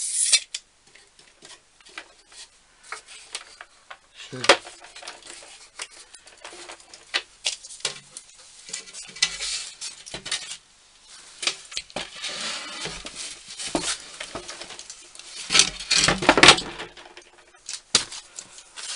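Workshop handling noises: scattered clicks, taps and short scrapes as a steel tape measure is used on a wooden stool frame and put away, with a longer, louder run of scraping and knocking near the end.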